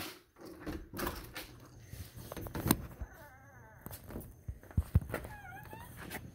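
A door knob turned and the door opened, with sharp clicks and knocks. A wavy squeak follows about halfway through, and a shorter squeak comes near the end.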